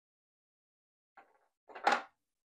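Small fly-tying scissors trimming the white polypropylene post yarn close to the thread wraps, heard as a faint short sound about a second in and a louder brief one near the end, with silence before.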